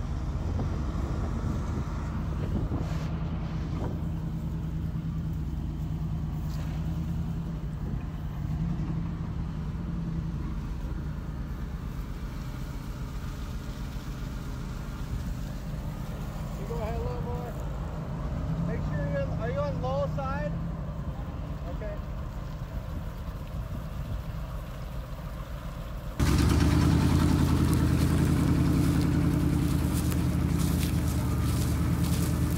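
An engine running steadily, with a brief voice in the middle. Near the end the engine sound cuts abruptly to a louder, closer version.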